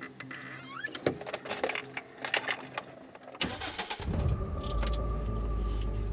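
Car keys jangling and clicking at the ignition, then the car's engine starts about three and a half seconds in and settles into a steady idle, heard from inside the car.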